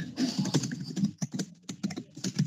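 Typing on a computer keyboard: a quick, irregular run of key clicks.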